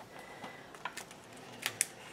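Hands pressing and smoothing a taped paper page onto a chipboard album: quiet handling with a few light, sharp clicks and taps, two of them close together near the end.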